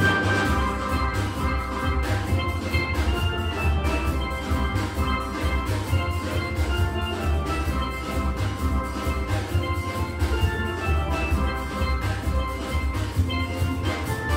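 A steel band playing: an ensemble of steel pans struck with mallets, many bright pitched notes over a strong low bass line in a quick, steady rhythm.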